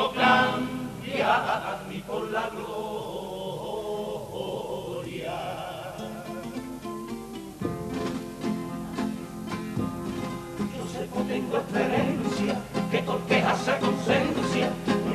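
A Cádiz carnival comparsa, a male chorus singing in harmony to Spanish guitars. The singing eases into a softer, held passage, then guitar strumming and fuller voices come back in about eight seconds in.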